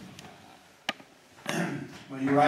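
A single sharp click of chalk striking a blackboard about a second in, followed by a shorter, softer sound near the end.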